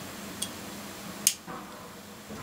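Two small, sharp clicks, the second louder, as a diecast toy car is handled and picked up, over a steady low room hum.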